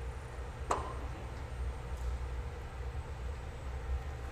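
Steady low roar of a glassblowing hot shop's gas-fired glory hole and furnace, with a single light click about three-quarters of a second in.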